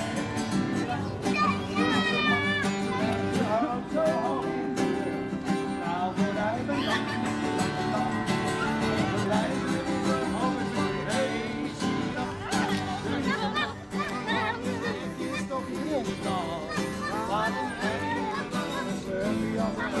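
Acoustic guitar music played live, continuing without a break, with children's and crowd voices over it.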